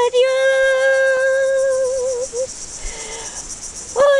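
An elderly woman's unaccompanied singing voice holds one long note at the end of a hymn line, wavering slightly and fading out about two and a half seconds in. A steady, pulsing high-pitched insect chorus runs underneath throughout.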